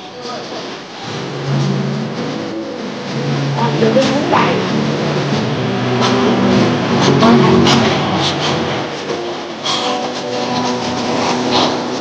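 Indistinct voices of people talking, with no clear words, over a steady background hum.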